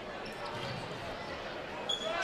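Basketball gym background during play: a steady murmur of spectators and players' voices, with faint ball and shoe sounds from the hardwood court.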